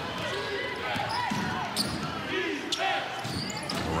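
A basketball being dribbled on a hardwood court, a few sharp bounces ringing in a large arena, over the murmur of voices and short squeaks.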